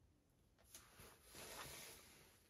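Near silence: room tone with a few faint, soft rustles, the longest in the second half.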